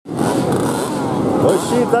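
A group of vintage two-stroke Jawa motorcycles running together, with people talking over them near the end.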